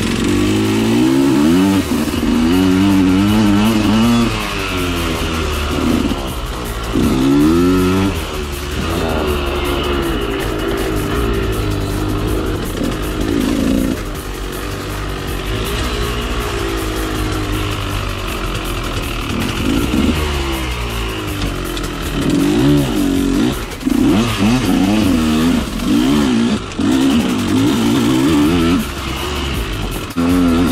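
2013 KTM 125 SX two-stroke single-cylinder engine, heard from on the bike as it is ridden along a dirt trail. Its pitch climbs and drops back again and again as the throttle is worked, with a quieter, steadier stretch in the middle and a run of quick rises near the end.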